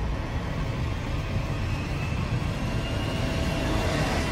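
Sci-fi film sound effects of a spacecraft engine: steady noise with a deep rumble, swelling slightly toward the end.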